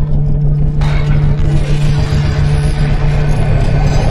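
Cinematic logo-intro sound effect: a loud low rumbling drone that starts abruptly, with a steady low hum under it and a brighter hiss swelling in about a second in.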